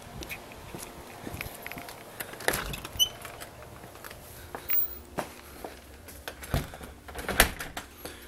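Footsteps on concrete and a door being opened and closed, with scattered knocks and clunks; the loudest knock comes near the end.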